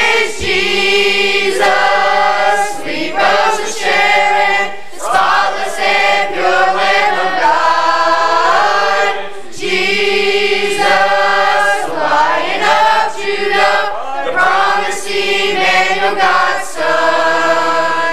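A mixed youth choir of boys and girls singing a gospel hymn together, in long sustained phrases with short breaks for breath between them.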